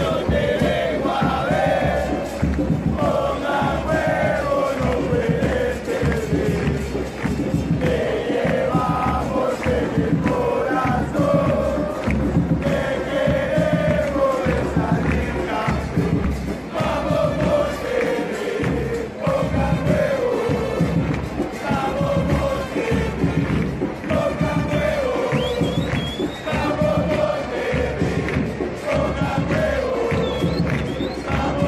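Football supporters chanting in unison in a stadium stand, with bass drums (bombos) beating steadily underneath.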